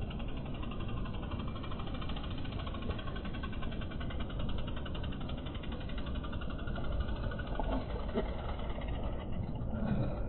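Slowed-down audio of a slow-motion replay: a low, steady rumble with a fast, even ticking running through it, from a BMX bike's frame being whipped around on tarmac.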